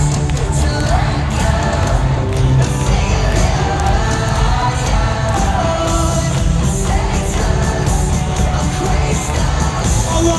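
Loud live rock music from a band played through an arena sound system, with singing and the crowd yelling and cheering.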